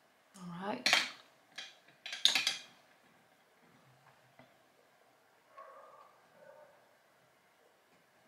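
Small hard cosmetic containers clattering and clinking in two short bursts, about a second in and again just after two seconds, then a faint rustle near six seconds.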